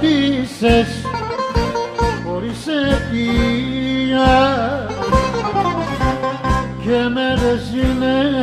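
Greek laiko band music: a plucked-string melody line with slides and vibrato over a steady bass-and-percussion beat.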